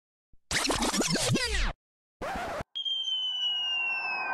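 Electronic intro sound effects: a quick flurry of falling, glitchy pitch sweeps, a short burst of noise, then a sharp hit that leaves a ringing tone slowly sliding down in pitch.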